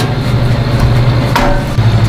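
A metal air fryer drawer on a Blackstone griddle clunks once, about one and a half seconds in, over low, steady background music.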